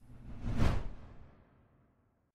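A whoosh sound effect that swells to a peak about half a second in and then fades away, gone by about a second and a half.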